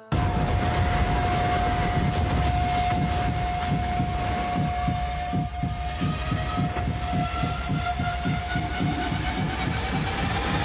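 Trailer sound design: a loud, siren-like high note cuts in suddenly and is held over a pulsing low rumble, while a second tone rises in pitch over the last few seconds.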